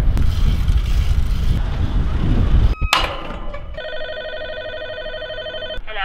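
A low outdoor rumble for the first few seconds, then a short click and a door-entry intercom's call tone ringing steadily for about two seconds before cutting off suddenly, as the intercom calls the flat.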